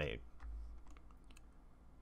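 A few faint, scattered computer mouse clicks over a low steady hum.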